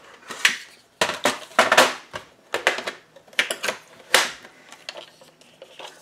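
A plastic scoring board being brought out and set down on a countertop, with a string of knocks and clatters over the first four seconds or so as it is handled into place.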